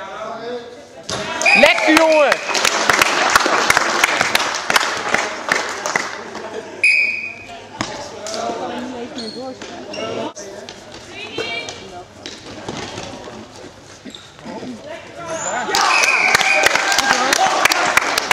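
Indoor korfball play on a sports-hall court: the ball bouncing, sneakers squeaking on the floor and players calling, all echoing in the hall. The clatter is busiest in the first few seconds and again near the end.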